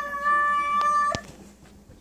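A high-pitched voice or animal call held on one long, steady note. It cuts off a little over a second in, with a click or two.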